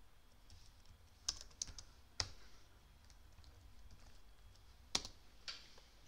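Computer keyboard keys being pressed: a handful of sharp, separate keystrokes with pauses between them, the sharpest about a second and two seconds in and again near the end.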